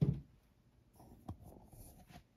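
A dull, low thump at the start, then a single light tap a little over a second later, with faint rustling in between.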